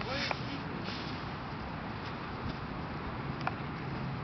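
Low, steady outdoor background noise with a faint hum, broken by a couple of brief, faint chirps: one just after the start and one near the end.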